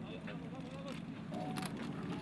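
Indistinct voices calling out over a steady low rumble, with a few sharp clicks.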